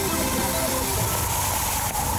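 Television news intro music, its notes fading under a steady whooshing transition effect.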